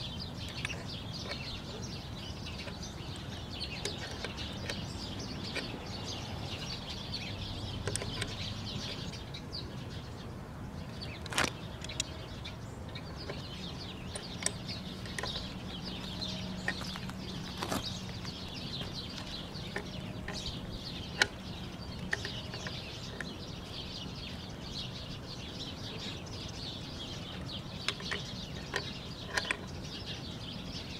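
Birds chirping steadily in the background, many short high notes, with a few sharp clicks of a hand crimping tool squeezing a connector onto an electrical service cable, one about a third of the way in and a couple more a few seconds later.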